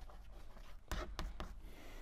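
Chalk writing on a blackboard: faint scratching with a few sharp taps of the chalk against the board about a second in.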